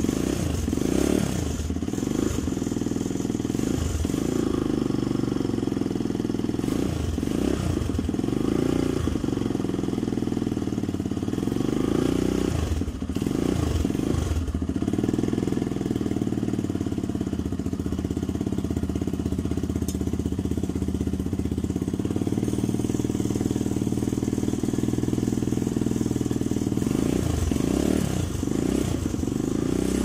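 Xmoto 250 pit bike's four-stroke single-cylinder engine running, the throttle blipped again and again so the revs rise and fall, with a steady stretch in the middle and more blips near the end.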